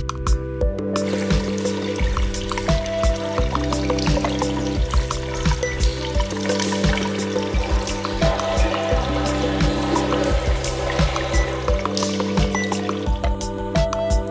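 Instrumental background music, with a running, pouring-water sound effect over it from about a second in until near the end.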